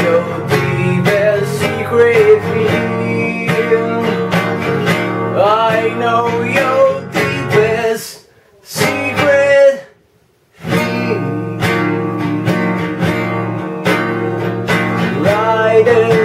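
Acoustic guitar strummed in steady chords, with a man's voice singing long, wordless notes over it. The sound drops out to near silence twice, briefly, a little past the middle.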